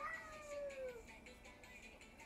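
A pet cat meowing once off-camera: one call of about a second that rises quickly and then slides down in pitch, over quiet background music.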